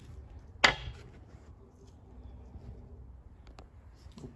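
A single sharp knock about half a second in, over a faint low hum, with a much fainter tick near the end.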